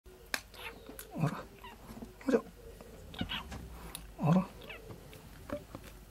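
About four short vocal sounds, several falling in pitch, with a few light clicks between them.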